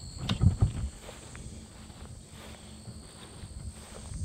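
Footsteps brushing through tall grass and weeds, with a few heavier steps and a click in the first second, then softer swishing. A steady high chirring of insects runs underneath.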